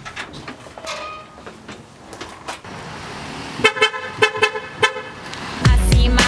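A car horn honking, a quick run of about five short toots about two thirds of the way through. Bass-heavy pop music starts just before the end.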